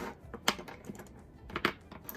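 A handful of plastic pens clacking against each other and the desk as they are set down: a few sharp clicks, the loudest about half a second in and another pair near the end, with lighter ticks between.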